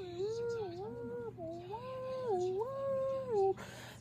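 A woman humming a wordless tune: a string of gliding notes that rise, hold and fall, stopping about three and a half seconds in.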